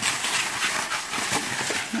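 Plastic rubbish bags and bubble wrap rustling and crinkling as they are pushed about by hand, a steady dense crackle.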